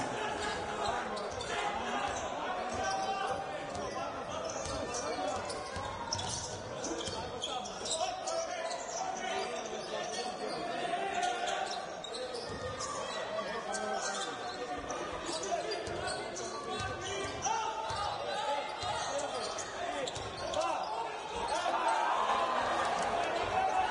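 Basketball being dribbled on a hardwood court, its bounces echoing in a large sports hall, with voices from players and spectators.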